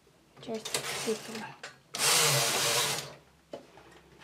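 Knitting machine carriage pushed across the metal needle bed to knit a row, a loud sliding rasp lasting about a second, starting about two seconds in.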